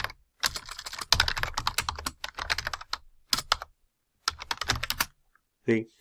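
Typing on a computer keyboard: a fast run of keystrokes, a short pause, then a second shorter run, stopping about a second before the end.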